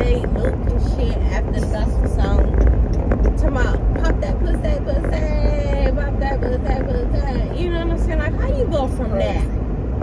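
Women's voices talking and laughing indistinctly over the steady low rumble of a car, heard inside the cabin.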